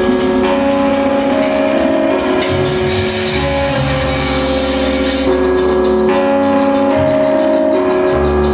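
Live jazz-rock trio playing: long held keyboard chords that change every second or two, over an electric bass line that drops in and out.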